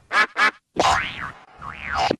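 Effect-processed cartoon logo soundtrack: two short blips, then two springy cartoon sounds that each swoop up in pitch and back down, one around the middle and one near the end.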